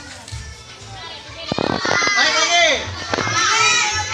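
Children shouting and cheering in high voices, loud from about a second and a half in, over background music with a steady beat.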